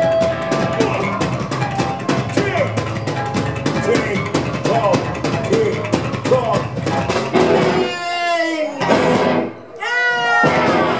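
Live ska played by a band on electric guitars, upright double bass and drum kit, with a quick, steady offbeat rhythm. Near the end come falling sliding notes, then a brief break before the band crashes back in.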